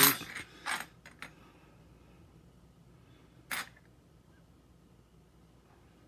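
Loose metal wood screws clinking as they are dropped onto a hardwood floor: one sharp clink at the start, a few lighter ones in the next second, and another single clink about three and a half seconds in.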